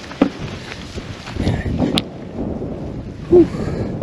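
Wind buffeting the microphone and footsteps on a dirt trail, with scattered knocks and a sharp click about two seconds in. Near the end comes a short breathy 'whew' of exertion.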